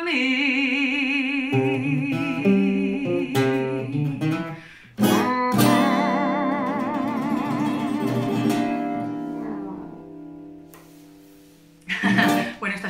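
The ending of a slow jazz song: a steel-string acoustic guitar plays a short run and then a final chord, while a woman's voice holds long notes with vibrato. The last chord and held note die away about ten seconds in.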